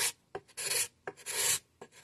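Curved spring-steel cabinet scraper drawn across a wooden stool seat in about three short scraping strokes, each a brief rasping hiss with quiet between. This is the final smoothing of the saddled seat after the travisher.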